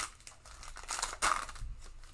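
Foil wrapper of a trading card pack crinkling as the cards are slid out, in short rustles with the loudest at the start and just past a second in.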